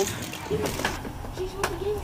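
Faint voices in the background with two light knocks, one near the middle and one later.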